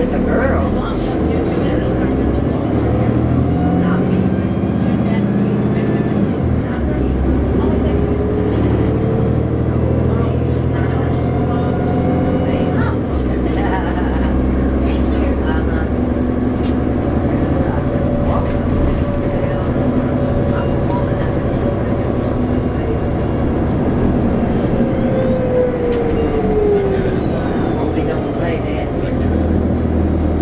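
Cummins ISL diesel engine of a 2009 New Flyer D40LFR transit bus, heard from inside, pulling away and accelerating: the engine note climbs, then drops as the Voith D864.5 automatic transmission upshifts about six seconds in, climbs again and shifts once more about thirteen seconds in. Later a whine falls in pitch.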